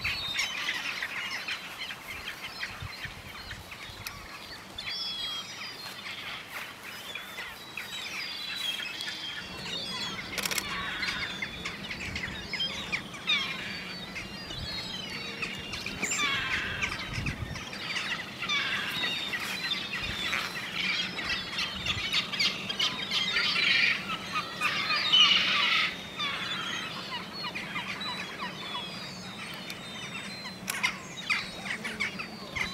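Many gulls calling over one another, their calls sliding up and down in pitch and busiest in the second half. A low steady hum comes in about nine seconds in.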